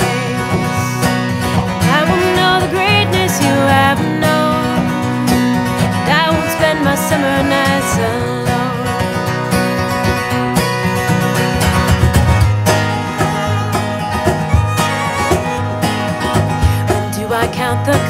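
Instrumental break in a country-folk song: a violin plays a sliding, fiddle-style melody over strummed acoustic guitar, the singing coming back in only at the very end.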